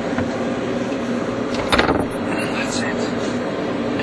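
Steady hum and hiss of the space station's cabin ventilation, with a brief sound about two seconds in.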